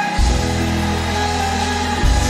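Gospel church music: held chords over a deep bass, with singing. The bass moves to a new chord just after the start.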